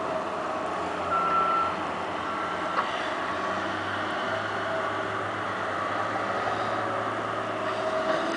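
Heavy construction machinery, excavators and a wheel loader, running steadily, with a backup alarm beeping twice about a second in.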